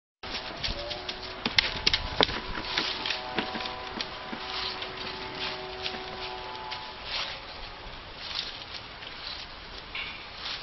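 Dry fallen leaves crackling and rustling underfoot on a lawn, with scattered sharp clicks that are busiest in the first few seconds. A faint steady hum of a few tones runs beneath until about seven seconds in.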